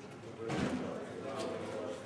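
Indistinct voices of people talking in a room, with a louder burst about half a second in.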